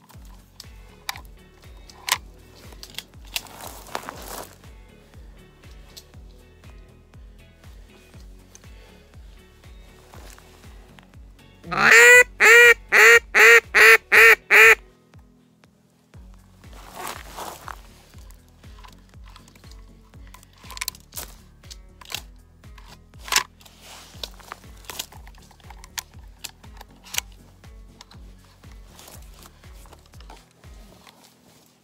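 A hand-blown duck call sounding a quick run of about eight loud quacks, about three a second, around twelve seconds in, over quiet background music.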